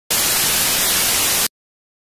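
Loud television static hiss that starts abruptly and cuts off suddenly after about a second and a half.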